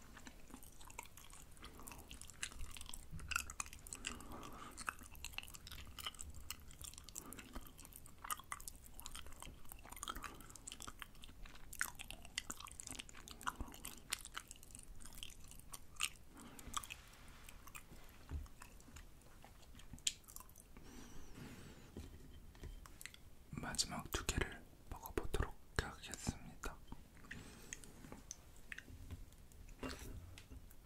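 Close-miked chewing and biting of fried rice cakes: a steady run of short, crisp mouth clicks and crunches, growing louder and denser for a few seconds about three-quarters of the way through.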